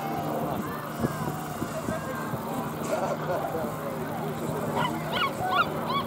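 Po-2 biplane's radial engine droning steadily as it passes low overhead. Over it are the voices of an open-air crowd talking and calling out, busiest near the end.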